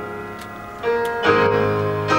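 Gospel song accompaniment between sung lines: held instrumental chords that fade, then new chords come in just under a second in and again shortly after.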